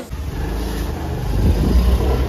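Motor scooter engine starting with a click and then running, getting louder about a second and a half in.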